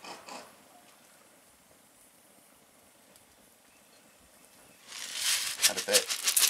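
Faint for several seconds, then about five seconds in a loud hiss with crackling sets in: silica gel crystals being poured into a steel pot of hot sodium silicate mixture, sizzling as they hit the liquid.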